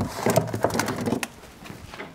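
Rummaging in an open refrigerator: a quick run of light knocks and clicks in the first second or so, mixed with short low pitched sounds, then quieter.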